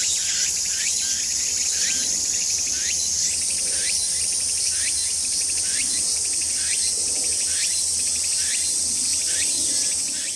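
Chorus of insects: a steady high-pitched shrill buzz that shifts slightly higher about three seconds in, with a short rising chirp repeating about every two-thirds of a second.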